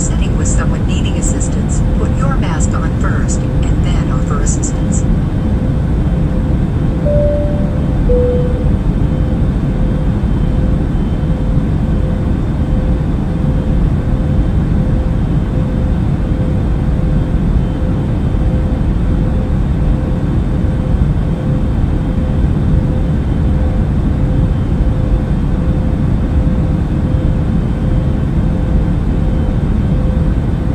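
Steady airliner cabin drone: a deep, even rush of jet engine and air noise. About seven seconds in, a two-note falling chime, like a cabin chime, sounds over it.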